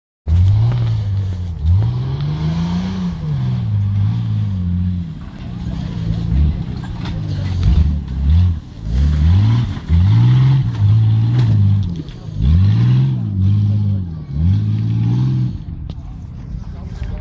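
Jeep engine driven off-road, revving up and dropping back again and again: about eight throttle blips with short lulls between them.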